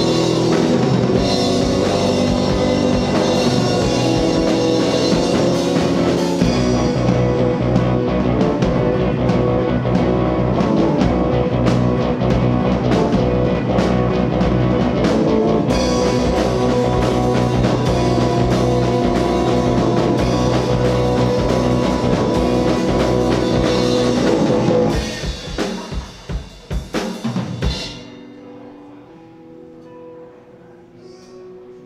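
Live indietronica band playing amplified through a PA, with a drum kit and keyboards, loud and steady. About twenty-five seconds in, the song breaks into a few scattered last hits and stops, leaving low room noise.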